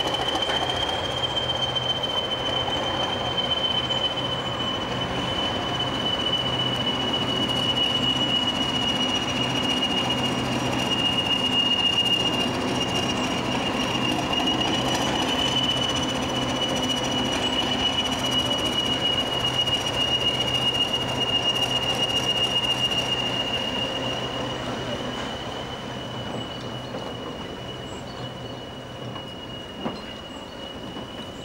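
A train crossing slowly over a level crossing, with a steady high-pitched wheel squeal over a low engine hum and rumble. The sound fades over the last few seconds as the train moves away.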